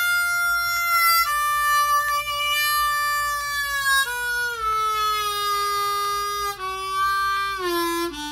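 Hohner diatonic harmonica played with bent notes: long held notes that slide and step down in pitch several times, dropping lower toward the end. The notes bend readily.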